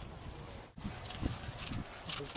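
A dog chewing watermelon rind: a few faint, short crunching knocks.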